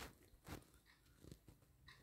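Near silence in a pause of the narration, with a few faint short clicks.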